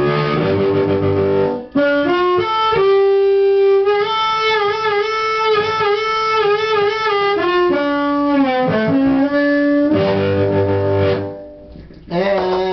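Blues harmonica played cupped tightly around a handheld mic and amplified through a homemade 25 W solid-state harp amp (LM1875 chip amp with a Tweed-style dirty preamp). It opens and closes on fuller chords with a long held, wavering note in between, and stops shortly before the end.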